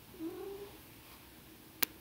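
A faint, short pitched call with a slight rise, then a single sharp click near the end.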